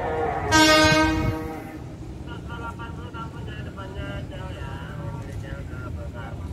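Electric commuter train horn: one blast of about a second, starting half a second in and the loudest sound. Voices and the low rumble of the approaching train follow.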